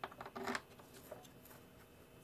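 Faint clicks and rubbing as hands handle the plastic underside of an upturned Sanitaire commercial upright vacuum. The loudest handling sound comes about half a second in, with a couple of small ticks after it.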